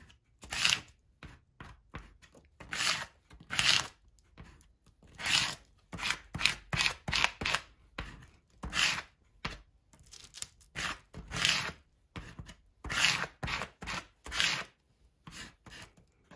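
Plastic card scraping fluid acrylic paint across thin deli paper laid over a stencil, in short, uneven strokes, roughly one or two a second, some louder than others.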